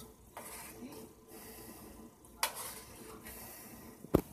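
Quiet kitchen room tone broken by a single sharp clink about two and a half seconds in: a metal spoon knocking against a stainless steel pot of bean soup.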